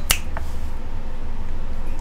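A single sharp finger snap just after the start, over a steady low hum.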